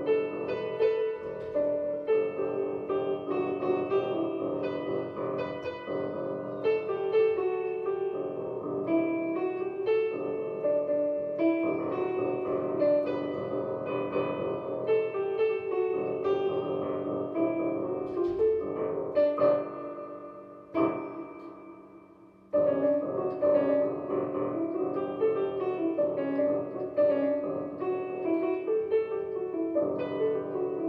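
Digital piano played as a solo, a melody over chords in steady succession. About two-thirds of the way through, a chord is left to die away for about two seconds before the playing starts again.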